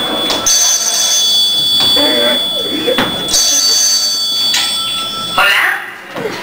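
A telephone ringing in bursts about a second long, twice, as high steady electronic tones, with short spoken phrases between the rings. The ringing stops near the end, where a voice speaks more loudly.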